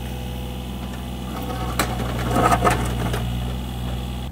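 Takeuchi mini excavator's diesel engine running steadily, with a sharp knock about two seconds in and a short burst of clattering and scraping soon after as the bucket digs into rocky ground.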